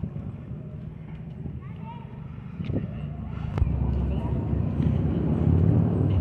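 Faint voices of people talking in the background over a low outdoor rumble that grows louder about halfway through, with two sharp knocks just before the rise.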